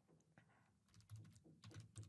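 Faint typing on a computer keyboard: a run of soft keystrokes, coming quicker in the second half.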